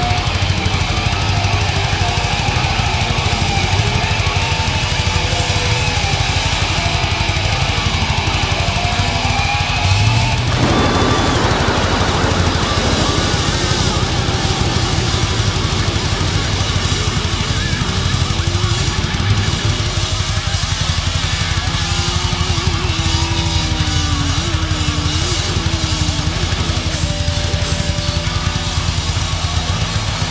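Live thrash metal band playing loud: drum kit and distorted electric guitars. About ten seconds in the sound shifts with a falling sweep, and later the guitar plays sliding, bending notes.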